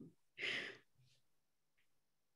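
A person's single short breathy exhale, like a sigh, about half a second in.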